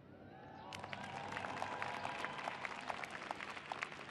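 Audience applauding, building up about half a second in and continuing steadily as a dense patter of many hand claps.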